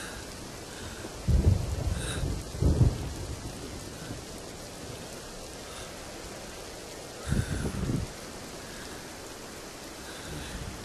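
Steady rain with low rumbles of thunder: two close together starting a little over a second in, and another at about seven seconds.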